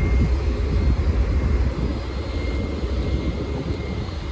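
Steady low rumble of a boat under way at trolling speed: its engine drone mixed with wind and rushing water.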